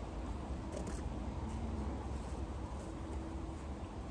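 Quiet outdoor background: a steady low rumble with a faint hiss, and a few faint clicks about a second in.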